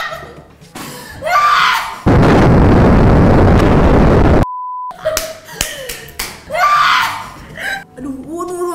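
Explosion sound effect: a loud, even roar of noise lasting about two and a half seconds that cuts off abruptly, followed by a short steady beep. Women laughing before and after it.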